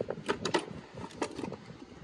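A few light clicks and knocks of hard plastic torque-wrench cases and tools being handled in a toolbox drawer, over a rough haze of wind noise on the microphone.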